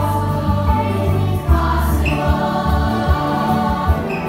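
A song played back for dancing: several voices singing together over a steady bass beat.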